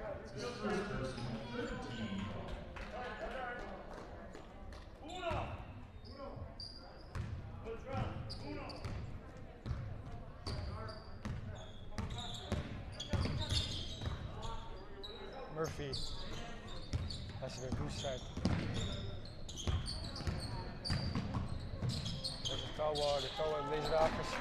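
Basketball game sounds in a gym: a ball bouncing on the hardwood floor, sneakers squeaking, and players and coaches calling out, all with the echo of a large hall.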